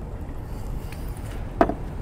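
Steady low outdoor city rumble, with one sharp clink about one and a half seconds in as the emptied small stainless steel shaker tin is set down on the table.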